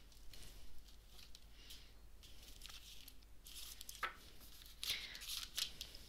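Tarot cards being shuffled and dealt onto a table: faint scattered rustles and soft clicks of the cards, a little louder near the end.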